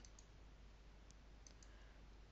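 Near silence with a few faint, short computer-mouse clicks.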